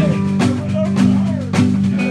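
Live guitars strumming a steady country rhythm at about two beats a second, with a voice over the chords.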